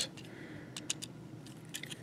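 Faint handling of a plastic Transformers Generations Whirl action figure: a few light plastic clicks of its parts about a second in, and again near the end.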